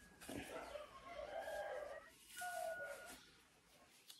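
A rooster crowing faintly: one held, pitched call about a second in, lasting about two seconds. Under it, light rustling of a wig and hair being handled.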